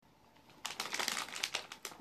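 Dense crackling and rustling close to the microphone for about a second and a half, starting about half a second in: handling noise as she leans in and adjusts her position at the phone.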